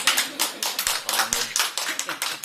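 A rapid, irregular run of sharp clicks, roughly eight to ten a second, with a short laugh at the start.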